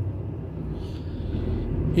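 Lorry's diesel engine and road noise heard inside the cab while driving: a steady low drone and hum.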